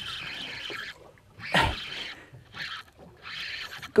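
Spinning fishing reel whirring in several short bursts, as line runs or is wound with a fish on the rod. A single short thump comes about a second and a half in.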